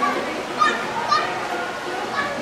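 Young children's voices: two short high-pitched calls about half a second apart, over a steady background of people talking.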